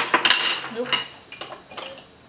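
Toy building blocks clicking and clattering as they are grabbed from a pile and set down on a wooden table, opening with one sharp knock followed by a run of smaller clicks that thins out toward the end.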